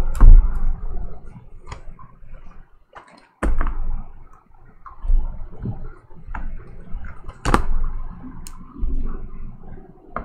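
Cardboard trading-card boxes being handled on a table: slid, lifted and set down, with several sharp knocks and low thuds and some rustling between.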